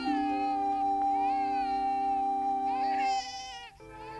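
Newborn baby crying in short wavering wails over a held chord of background music; the chord stops about three seconds in.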